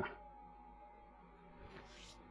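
Near silence: faint room tone with a steady low hum and a thin, faint steady tone.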